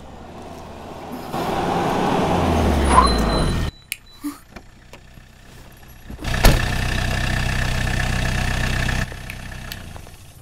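A motor vehicle engine running, its low rumble rising before it cuts off abruptly a little before four seconds in. About six and a half seconds in a sharp knock starts a second loud, steady noise that stops suddenly about two and a half seconds later.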